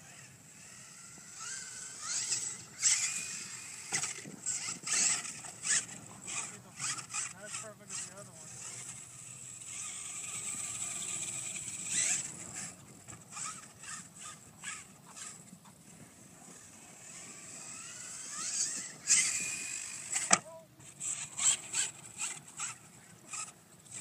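Brushless electric motor of a Losi LST 2 RC monster truck whining up in pitch in repeated bursts of throttle, with tires scrabbling in loose sand and short clattering knocks from the chassis and suspension as it drives over and lands off sand piles.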